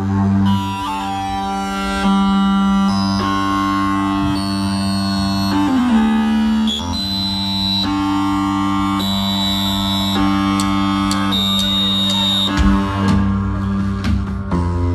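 Live band playing a slow, sustained passage: long held keyboard chords over a steady low bass note, with the chord changing every second or two.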